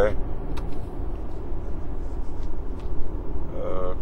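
Steady low rumble of outdoor background noise, with a few faint clicks scattered through it.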